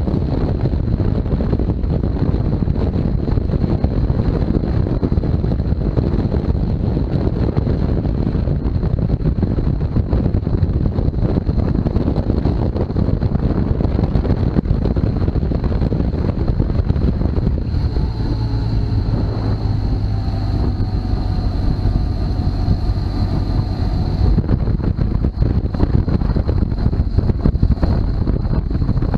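Wind buffeting the microphone of a camera on a BMW R1200GS at road speed, with the motorcycle's engine running underneath. For several seconds past the middle a steady engine hum comes through more clearly above the wind.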